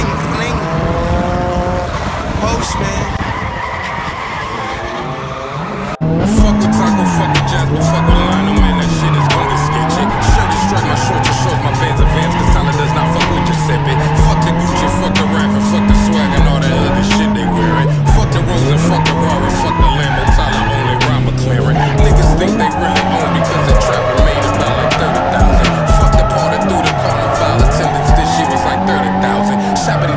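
Nissan 180SX's turbocharged SR20DET engine in a drift, with tyres squealing. The first six seconds are quieter, heard from beside the track. Then it cuts to inside the cabin, louder, with the engine revving up and down every second or two.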